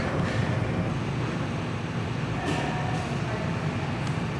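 Steady low rumble of background noise, even throughout with no distinct events.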